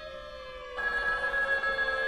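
String quartet music: a held note slides slowly down in pitch over sustained tones. A little under a second in, a fast trilling ring like a telephone bell joins it.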